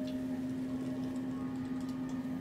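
A steady low drone of background meditation music, with fainter tones drifting in and out above it. Faint scratching of long acrylic nails on skin and hair comes through on top.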